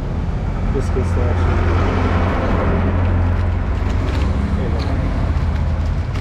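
Street traffic noise: a motor vehicle engine running close by, a steady low hum that swells about a second in and eases after about four seconds, with faint voices in the background.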